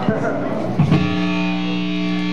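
Electric guitar through an amplifier with distortion: a note slides up about two-thirds of a second in, then is held as a steady sustained tone.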